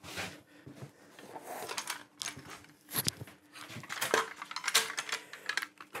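Steel bar clamps with red jaws clanking and knocking irregularly as they are picked up, their jaws slid along the bars, and set down on a wooden workbench. They are being laid out for a dry clamp-up of a glue joint.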